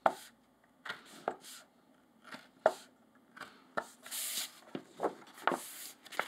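Bookbinding awl piercing sewing holes through the fold of a paper signature: a string of sharp, irregularly spaced pops. Paper rustles briefly about four seconds in and again near the end as the sheets are shifted.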